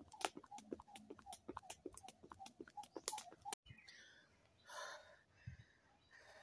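Skipping rope being jumped: the rope and feet strike the dirt in a steady rhythm, about three faint slaps a second, which stop abruptly about three and a half seconds in. Then only faint rustling and a single low thump.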